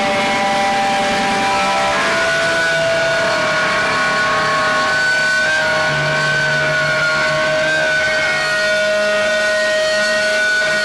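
Live band's distorted electric guitars holding long, sustained notes over a dense wash of noise, with a low bass note coming in about six seconds in; a loud, steady drone with no clear drum beat.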